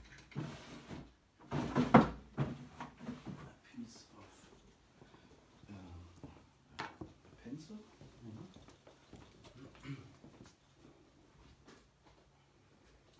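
Knocks and rustles of objects being handled close to the microphone, loudest in a sharp knock about two seconds in, followed by a quiet, indistinct voice.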